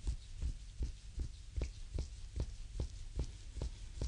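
Reflexology foot massage: a thumb pressing and rubbing in strokes along the oiled sole of a bare foot, skin on skin, about two and a half strokes a second, each one a soft low thump with a faint click.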